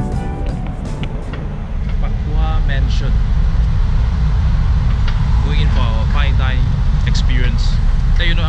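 Background music fading out within the first two seconds. It gives way to a steady low outdoor rumble, with short bits of a man's voice over it.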